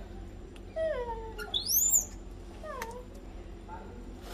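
Macaque calls: a falling, whining call about a second in, a short high squeal that rises sharply just before the middle (the loudest sound), and another falling call near the end.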